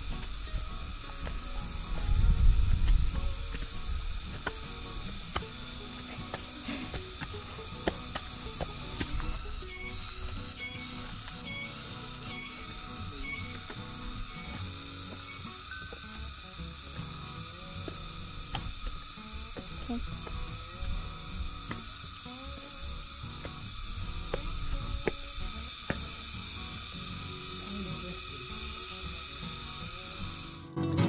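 Steady high-pitched drone of an insect chorus, several thin unbroken tones, with scattered light footsteps on grass and leaf litter. A burst of low rumble comes about two seconds in, and a few short repeated chirps around ten to thirteen seconds.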